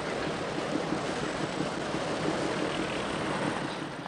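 A river tug's engine running steadily as it pushes a barge, over the rush of churning water.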